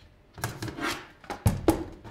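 The metal case of a Ubiquiti UniFi network switch scraping as it is pushed loose from its base, then two sharp knocks about halfway through as the unit is handled and turned over.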